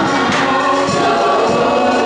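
Gospel choir singing with music, loud and continuous.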